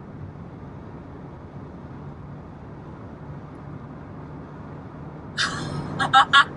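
Steady road and engine noise inside a car's cabin while driving at highway speed. A louder, higher sound starts suddenly near the end.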